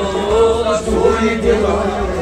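Kashmiri Sufi devotional song: men's voices singing together in long, gliding phrases over harmonium and a plucked lute.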